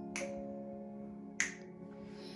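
Slow music playing quietly, with long held notes. Two sharp snap-like clicks sound over it, one right at the start and one about a second and a half in.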